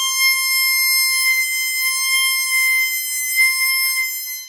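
Harmonica playing one long held note, steady in pitch with no vibrato or tremolo. It is a plain, unshaped long tone of the kind that can sound like an alarm.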